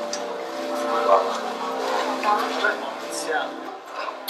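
Short spoken exchanges in Italian over a steady, sustained musical drone that fades out near the end.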